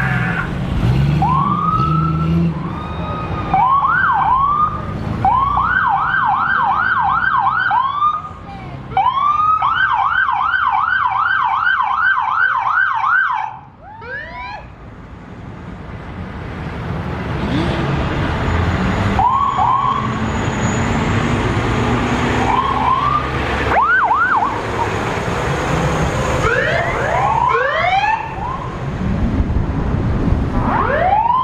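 Sirens on passing fire department vehicles: a few single rising whoops, then two runs of fast yelp rising and falling about three times a second, then scattered whoops and chirps again toward the end, over the low rumble of the passing vehicles.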